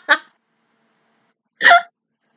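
A woman laughing: a short burst fades out right at the start, then after a silent gap of over a second comes one loud, high voiced laugh near the end.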